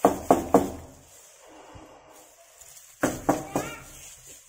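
Knocking on a front door: three quick knocks, then about three seconds later three more.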